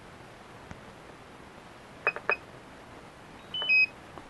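DJI Phantom 4 remote controller beeping as its power button is worked: two short high beeps about two seconds in, then a louder falling two-note chime near the end as it switches off.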